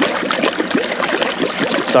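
Water trickling and bubbling in a vortex compost tea brewer, as air-lifted water spills from its two pipe arms onto the swirling whirlpool.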